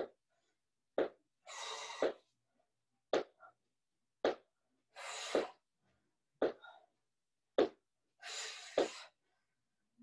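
A person exercising through a set of lunges: short sharp sounds about once a second as each rep lands, with a longer breathy exhalation three times.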